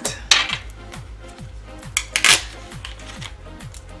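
Crinkling and clicking as a plastic-wrapped card of rhinestone flower embellishments is handled and opened, in two short spells, one just after the start and a louder one about two seconds in.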